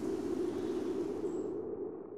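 A steady low hum that begins to fade near the end, left as the closing guitar music dies away.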